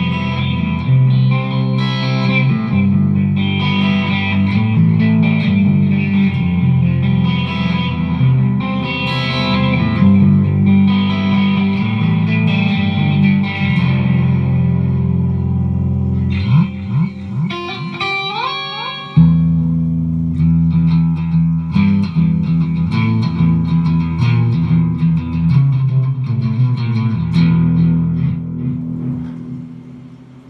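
Electric guitar played through an amp with effects, sustained notes and chords with a strong low end. A run of notes slides upward in pitch about two-thirds of the way in.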